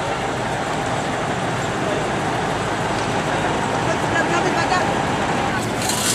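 Steady traffic noise, with road vehicles such as trucks and buses running and passing at a busy crossing.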